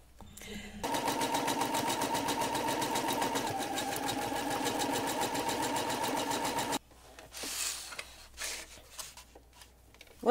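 Electric sewing machine running at a steady speed with a rapid, even stitching rhythm, basting outer fabric onto sew-in foam. It starts about a second in and stops suddenly after about six seconds, followed by faint handling noises as the fabric is moved.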